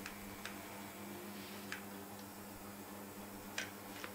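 A few sharp, irregularly spaced small clicks, about five in all with the loudest near the end, over a steady low electrical hum.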